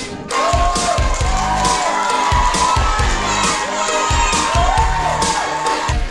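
A crowd of children cheering and shouting in long, high held calls, over background music with a steady beat.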